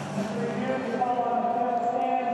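Held musical tones over background stadium crowd noise, with a higher note coming in about halfway through.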